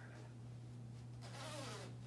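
Steady low electrical hum, with a brief rustle of clothing about one and a half seconds in.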